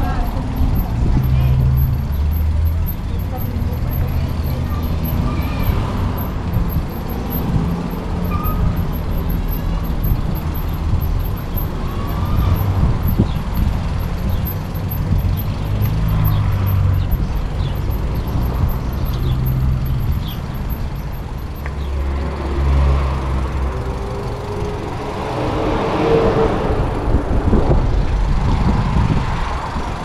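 Wind noise buffeting the microphone of a camera riding on a bicycle over stone paving, swelling and easing as the bike moves, with road traffic along the street beside it.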